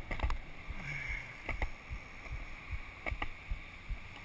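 Skateboard wheels rolling over a concrete sidewalk: a steady low rumble broken by a few sharp clacks as the wheels cross the joints between slabs.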